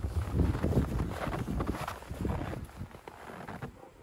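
Wind buffeting the microphone: uneven low rumbling that dies away near the end.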